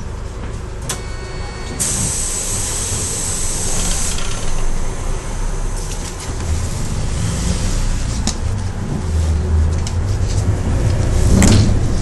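Interior of a Hyundai New Super Aerocity city bus under way: the engine rumbles low and grows louder in the second half as the bus pulls along. About a second in there is a click and a short electronic beep. Then comes a two-second hiss of compressed air, and near the end a sharp knock.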